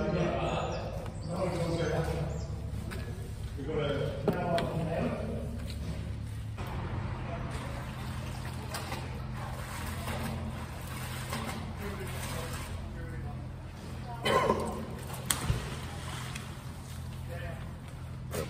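Water trickling and dripping, with indistinct voices and a steady low hum underneath.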